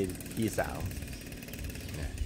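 A man speaking a couple of words in Thai, then a pause filled by a low, uneven rumble.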